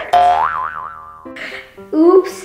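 Cartoon 'boing' sound effect with a wobbling pitch, fading over about a second, followed by a few short musical notes.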